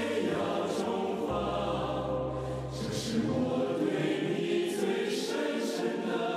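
A choir singing a slow song with long held notes over a deep sustained bass.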